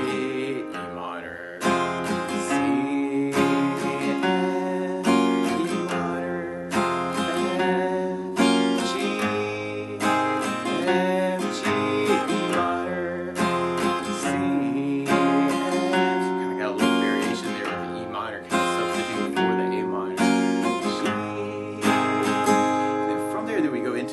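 Acoustic guitar, capoed at the first fret, strummed steadily through an F, G, E minor and C chord progression, with single bass notes picked between the down-up strums.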